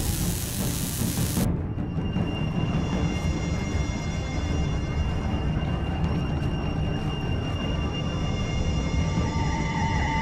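Tense, ominous film score over a steady deep rumble, with held high notes. For about the first second and a half a loud hiss plays, a sci-fi sound effect of a handheld tool sparking against a door keypad.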